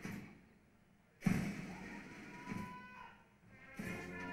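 Military band playing a slow march. A bass drum strikes about once every 1.25 seconds, with brass coming in near the end.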